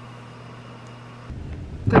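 Low, steady rumble inside a car cabin that starts abruptly about a second in, following a short stretch of quiet room tone with a faint steady hum.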